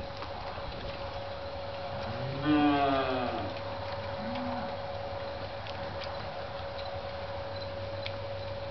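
A cow in a herd of black beef cattle moos once about two and a half seconds in, a call of about a second that rises and then falls, with a short lower call just after. A steady faint hum runs underneath.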